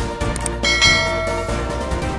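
Background music with a bright bell-chime sound effect, the notification-bell click of a subscribe animation, striking a little over half a second in and ringing out over about a second.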